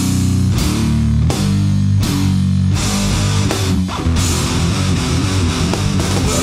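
Heavily distorted electric guitar and bass in a grindcore/sludge recording, playing loud stop-start chords that ring and cut off about every half second, then breaking into a faster, denser section about four seconds in.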